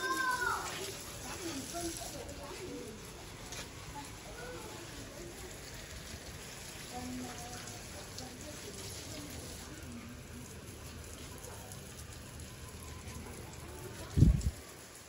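Garden hose pistol spray nozzle showering water over potted bonsai and the wet concrete floor: a steady hiss of spray.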